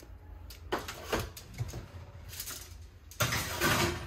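An oven door being opened and a metal sheet pan with a wire rack being handled at it: a few light knocks, then a longer scraping rush near the end.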